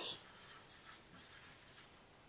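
Marker writing on a whiteboard: several faint, short scratchy strokes as letters are drawn.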